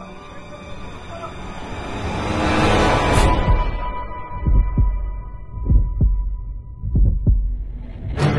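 Horror trailer sound design: an eerie swell builds to a peak about three seconds in and cuts off. A thin held tone follows, then three slow, deep heartbeat-like double thumps.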